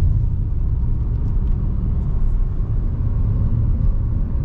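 Steady low rumble of a car driving at speed, heard from inside the cabin: engine and road noise.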